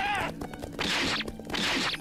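Anime episode audio playing at low volume: a brief shouted voice at the start, then several short noisy swishes and hits, typical of fight sound effects.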